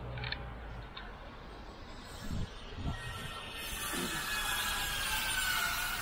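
A power tool from renovation work on a shop front starts up about halfway through and runs with a steady hissing whine. Before it, low street traffic rumble and a few dull knocks.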